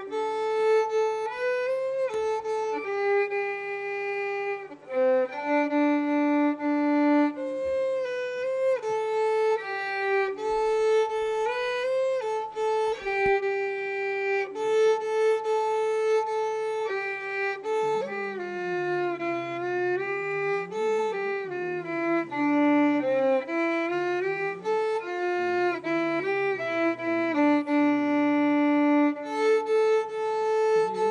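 Solo violin played by a young girl: a slow melody of long bowed notes. Past the halfway point the tune drops to lower notes that slide and waver before climbing back up.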